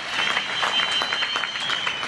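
Crowd applauding: dense, irregular clapping that fades toward the end, with a steady high-pitched tone running through it.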